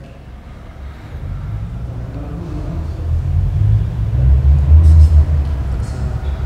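A low rumble that builds steadily and is loudest about five seconds in.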